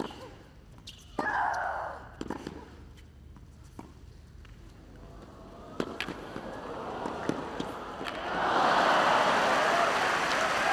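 Tennis rally: sharp racket-on-ball strikes, one about a second in with a player's loud grunt. Near the end of the point the crowd breaks into loud applause and cheering.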